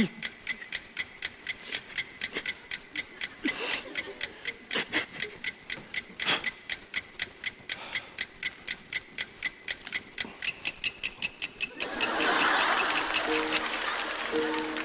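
Time-bomb timer sound effect: sharp, high, evenly spaced electronic ticks, about four a second, counting down to detonation. About two seconds before the end a hissing noise swells and light music begins.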